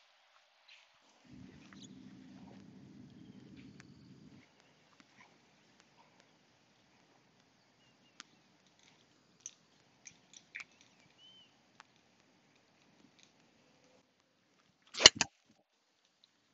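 A six-iron, swung as a half shot, striking a golf ball off wet turf: one sharp crack about a second before the end, the loudest sound here. Before it, a faint low hum for about three seconds near the start and a few faint scattered ticks.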